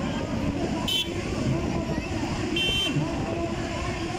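Tractor and motorcycle engines running under a crowd's mingled voices, with two short, high-pitched toots: one about a second in, a slightly longer one near three seconds.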